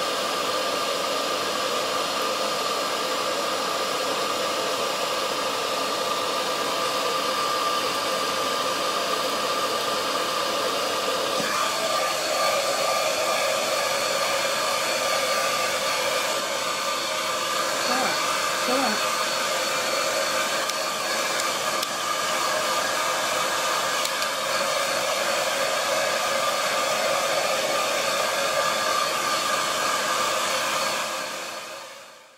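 Electric hair dryer running steadily, a rushing blow of air with a thin motor whine; its sound fills out a little about a third of the way through.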